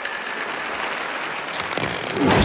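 Steady hiss from a film soundtrack, then a quick run of sharp clicks near the end as a revolver is handled and cocked.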